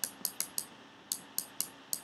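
Irregular, sharp clicks from a computer mouse and keyboard, about nine in two seconds, as handwritten strokes are drawn on screen.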